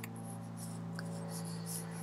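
A steady low electrical hum made of several fixed tones, with a faint click about a second in.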